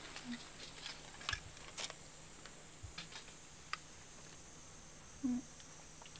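Quiet room tone with a low steady hum and a few faint, scattered small clicks in the first few seconds, then a short murmured 'mm' about five seconds in.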